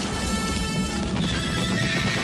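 Film soundtrack of a cavalry battle: horses whinnying and galloping over music.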